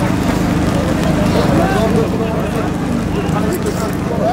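A crowd of men's voices shouting and calling over one another, with no single clear speaker, over a steady low rumble.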